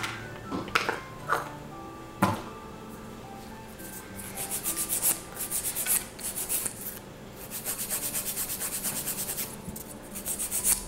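Hand nail file rasping across the edge of an artificial nail in quick back-and-forth strokes, shaping and tapering its sides. The strokes come in two runs, about four seconds in and again about seven and a half seconds in, after a few light knocks of handling.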